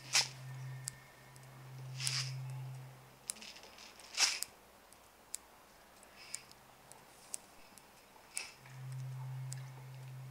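Clicks, scratches and rustles of things being handled on a floor, four louder scrapes among them. A low steady hum swells in and out three times.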